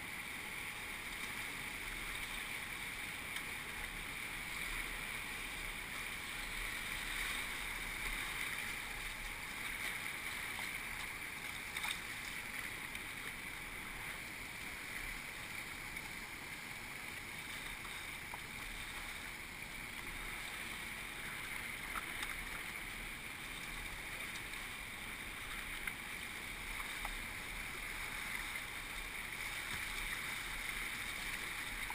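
River rapids rushing steadily around a whitewater kayak running through them, with a couple of sharp clicks along the way.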